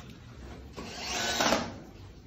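A handheld power tool runs briefly on wood for about a second, growing louder before it stops.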